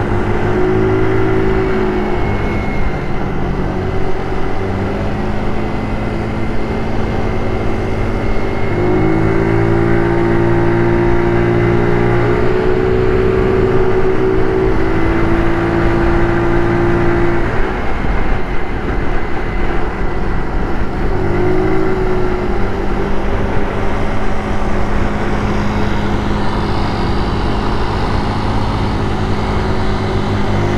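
GY6 four-stroke single-cylinder scooter engine running under way, heard from the rider's seat, its pitch stepping up and down as the throttle and road speed change, with a dip a little past halfway before it picks up again.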